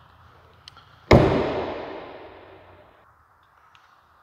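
Rear glass hatch of a 2011 Chevrolet Corvette coupe slammed shut: one loud bang about a second in, echoing in a large room and dying away over about two seconds.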